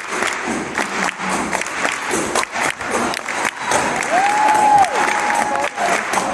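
Concert-hall audience applauding and cheering at the end of a live jazz piece, with one long rising-and-falling call from the crowd about four seconds in.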